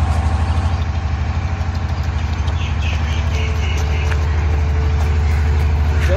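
An engine idling nearby: a steady low drone with a fast, even throb.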